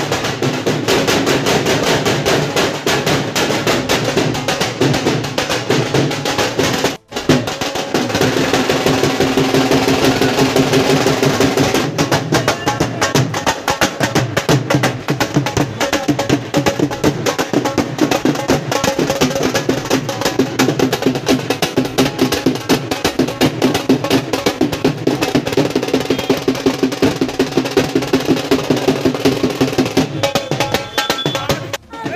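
A drum beaten in a fast, steady rhythm, with a sustained pitched sound beneath it. The sound breaks off briefly about seven seconds in.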